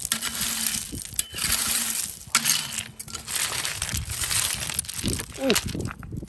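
A small hand fork scraping and raking through loose gravel and broken rock, with stones crunching and clinking in a run of uneven strokes. Near the end a short vocal 'ooh' is heard.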